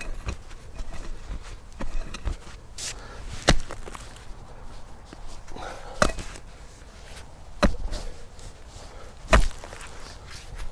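Steel pickaxe blade chopping into hard soil and roots, a series of sharp strikes every second or two with lighter knocks and scrapes between.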